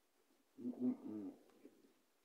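A woman's closed-mouth "mm-mm-mm" hum of enjoyment while chewing food, three short linked notes about half a second in.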